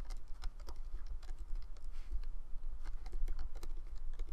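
Irregular small clicks and taps as a hook works rubber bands over the plastic pins of a Rainbow Loom, over a steady low hum.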